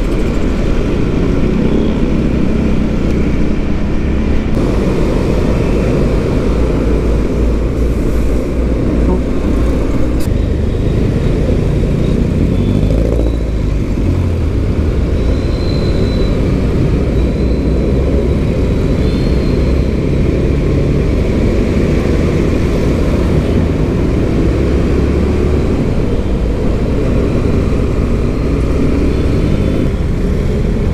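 A motorcycle riding through city traffic: its engine runs under a steady, loud low rumble of wind and road noise on the microphone.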